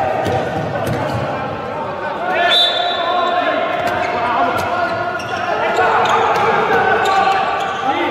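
A handball bouncing on an indoor court with scattered thuds, mixed with players' shouts and a short rising squeak about two and a half seconds in, all echoing in a large, nearly empty sports hall.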